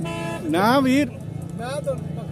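A vehicle horn sounds briefly at the start, followed by loud untranscribed voices calling out, with rising and falling pitch, over the steady low hubbub of a busy livestock market.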